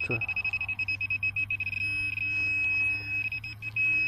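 High-pitched electronic tone from metal-detecting equipment, pulsing rapidly for much of the time and briefly holding steady, as the dug hole is probed for a buried metal target.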